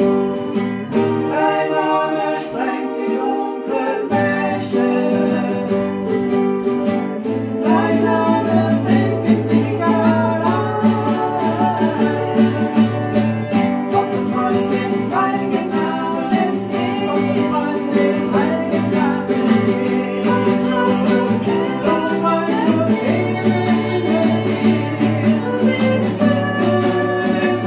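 Acoustic guitar playing a worship song, with singing over it; the music gets fuller and louder about eight seconds in.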